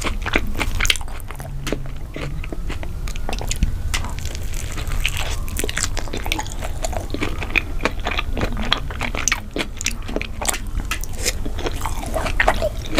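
Close-miked chewing of takoyaki: a dense, continuous stream of wet mouth clicks and soft crunches as the balls are bitten and chewed.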